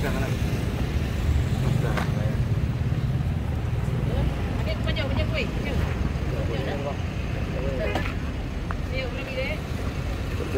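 Road traffic: a steady low engine rumble from passing cars and motorbikes, with people talking over it.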